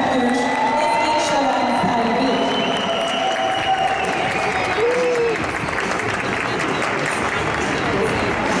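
Audience applauding steadily, with voices calling out over the clapping.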